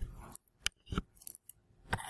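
Several short, sharp clicks a few tenths of a second apart, with near silence between them.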